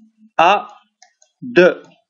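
A man's voice speaking two short, separate syllables with a pause between them, and faint clicks in the gap.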